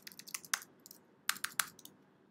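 Typing on a computer keyboard: a run of irregular key clicks with a short pause in the middle, as a password is retyped into a form field.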